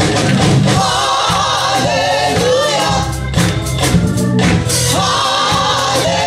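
A gospel praise team of several singers singing together into microphones, with instrumental backing underneath.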